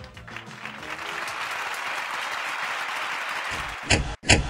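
Audience applause filling the hall as a live synth-pop song ends, with the last of the band's music fading out in the first second. A loud sharp hit comes in right at the end.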